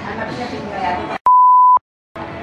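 Voices and laughter cut off abruptly, then a single loud steady electronic beep tone, about half a second long, the kind dropped in during editing as a censor bleep, followed by silence.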